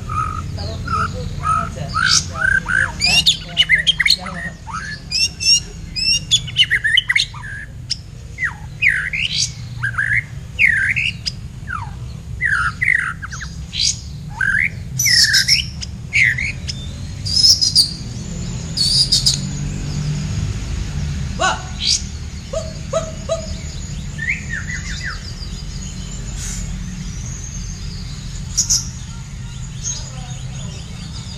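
A caged songbird singing a varied song of quick whistled notes, sweeping calls and rapid trills, busy in the first half and breaking into shorter phrases with pauses later, over a steady low background rumble.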